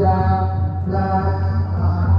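Buddhist chanting sung in long held notes over a steady low drone, with a short break about a second in.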